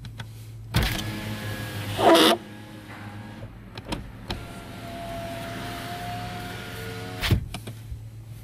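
Electric window motor in the driver's door of a 2017 Nissan X-Trail, running twice. The first run starts about a second in and lasts about a second and a half, ending with a louder burst of noise. The second run starts near the middle, lasts about three seconds with a steady whine, and ends with a sharp thump as the glass reaches its stop.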